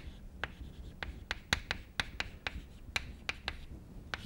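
Chalk on a chalkboard as capital letters are printed: an uneven run of short, sharp taps and scratches, about three or four a second.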